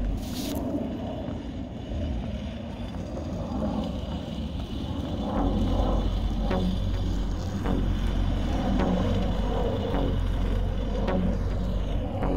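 A tire sled dragged across a rubber running track on a rope, its tread scraping and rumbling steadily, with faint ticks about once a second in the second half.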